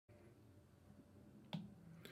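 Near silence with room tone, broken by one short click about a second and a half in.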